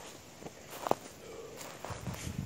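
Footsteps on grass close to the ground, with one sharp tap a little under a second in.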